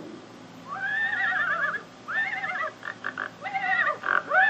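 Cartoon horse whinnying: a long quavering neigh about a second in, then a shorter one and a few short bursts, and another neigh starting near the end.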